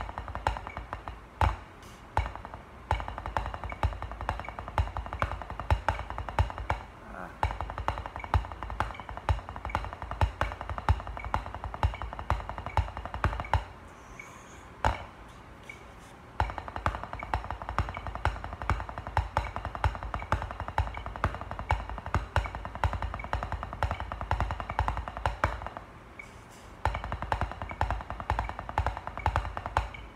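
Drumsticks playing fast, continuous strokes on a drum practice pad, with louder accented hits. The playing stops briefly twice, once near the middle and once about four-fifths of the way through.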